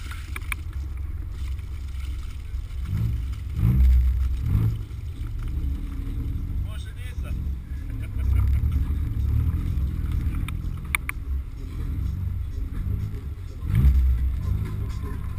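BMW E36 M3's swapped-in S54 3.2-litre straight-six running at low speed, heavily buffeted by wind on an outside-mounted microphone. It revs up briefly about three to four seconds in, again about half a second later, and once more near the end.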